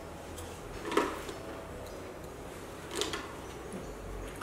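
Two brief knocks or clunks, about a second in and again about three seconds in, over quiet room tone.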